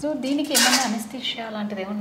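Light clinking and clattering of plastic syringes handled in gloved hands, loudest for about half a second near the start, with a woman's drawn-out voice underneath.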